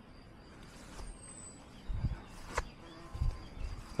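Handling noise from a hand-held camera being turned: a few soft low bumps from about two seconds in and one sharp click, over a quiet outdoor background. A faint high whistle falls in pitch about a second in.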